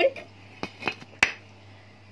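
Three short clinks and taps of kitchenware being handled, a metal spoon and glass bowl among it, the third the loudest.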